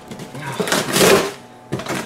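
Cardboard box being handled and slid about on a table: a run of scraping and rustling, a short pause, then a knock near the end.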